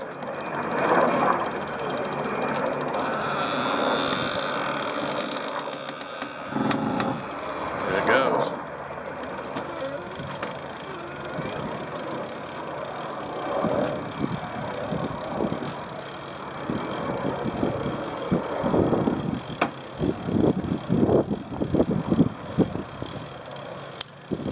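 Deck gear working as a Dragonfly 1000 trimaran's ama folds out on its beams: lines, winch and fittings rustling and creaking, then a run of irregular knocks and clicks near the end.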